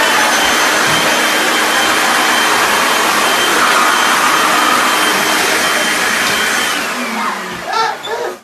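An electric blower running flat out: a loud, steady rush of air with a high motor whine, blasting toilet paper off its rolls. The motor winds down near the end.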